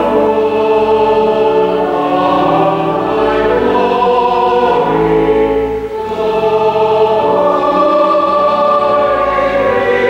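A church choir singing slow, held chords in a reverberant stone church, with a short break between phrases about six seconds in.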